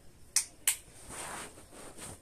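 Small bottles handled by hand: two sharp clicks about a third of a second apart, then a brief soft hiss.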